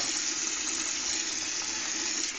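Water running steadily from a bathroom tap into the sink.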